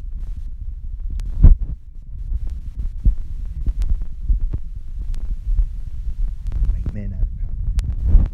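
A steady, uneven low rumble with irregular thumps, the loudest about a second and a half in, and a few sharp clicks scattered through.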